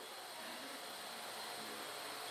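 Quiet room tone: a faint steady hiss in a pause between speech.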